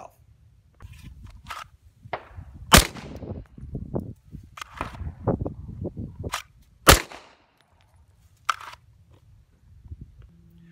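Gunshots on an outdoor shooting range: two loud sharp shots about four seconds apart, with several fainter shots between them and one near the end.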